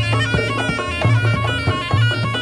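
Reog Ponorogo gamelan accompaniment: a shrill slompret reed trumpet playing a melody over regular kendang drum strokes and a low, repeating gong-chime pulse.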